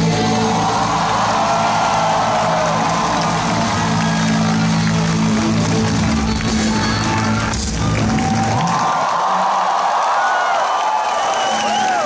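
Indie rock band's last chord ringing out under a crowd cheering and whooping; the band's sound stops about eight and a half seconds in, and the cheering and whoops carry on.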